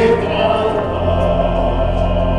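Choral music: voices holding long notes, with a deep bass tone coming in about a second in.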